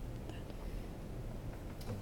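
Room tone: a low steady hum with a few faint small sounds.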